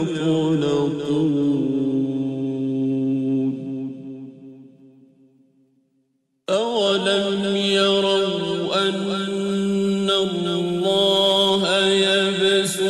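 A man's voice chanting the Quran in the melodic mujawwad style. A long held note at the end of a verse fades away about four seconds in. After a brief silence, the next verse begins abruptly, the voice winding up and down in long sustained phrases.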